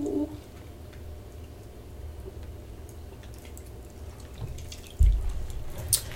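Small sips of a drink from a cup, with faint handling clicks over a low room rumble, then a sudden dull low thump about five seconds in.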